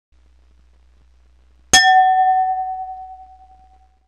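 A single chime struck about two seconds in, its clear tone ringing and fading away over about two seconds, over a faint low hum.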